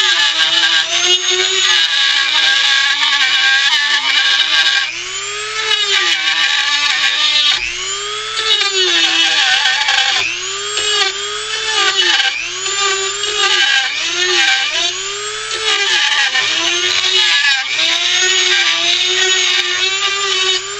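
Dremel rotary tool with a small carving bit grinding into wood, a high motor whine whose pitch sags and recovers again and again as the bit bites in and eases off.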